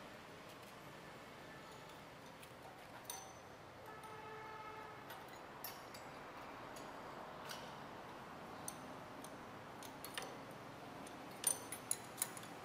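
Faint metallic clicks and clinks of a spanner on the bolts of a cashew cutting machine's knife holder while a knife is being replaced, the machine switched off. A few sharper clinks come near the end.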